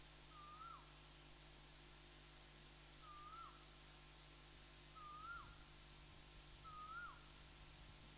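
A bird calling four times, about every two seconds, each call a short clear whistled note that lifts slightly then drops sharply, against near silence with a faint steady low hum.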